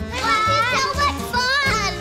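Young children's high voices calling out and squealing as they play, with wordless pitch glides, over background music with a steady low beat.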